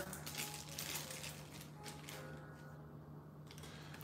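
Small cardboard boxes of ink cartridges being handled and set down on a table: faint, scattered clicks and taps, mostly in the first two seconds, over a low steady hum.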